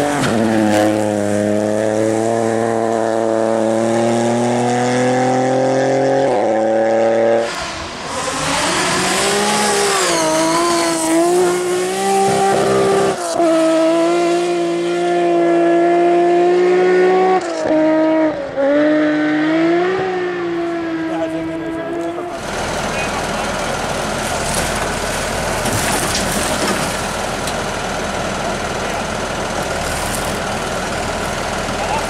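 Rally car engines on a gravel stage: one engine held at high revs, its pitch slowly climbing, then after a cut another car revving up and down through its gears. About two-thirds of the way through the sound changes to a steadier, rougher engine running, from a farm tractor.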